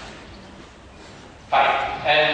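A short pause filled with quiet room noise, then a man's voice starts again abruptly and loudly about a second and a half in.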